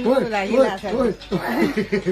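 A person's voice making playful sing-song syllables that rise and fall in pitch, mixed with chuckling, with no clear words.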